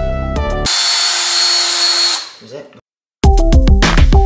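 Background music gives way about half a second in to a DeWalt cordless drill running at speed for about a second and a half, a dense whirr with a steady high whine as it bores a hole in wood for a thumb screw, then winding down. After a brief silence, electronic music with a heavy beat starts again.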